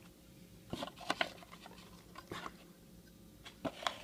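Trading cards being handled and sorted in the hands, the card stock giving a scattering of short clicks and taps.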